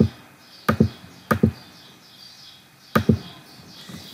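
Computer keyboard key presses: four sharp, irregularly spaced taps, the last about three seconds in, as the cursor is stepped through a hex editor.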